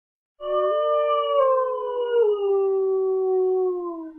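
A wolf-like howl of several overlapping drawn-out voices that starts about half a second in and slides slowly down in pitch, fading near the end.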